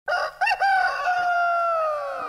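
A rooster crowing: two quick notes, then one long note held and slowly falling in pitch.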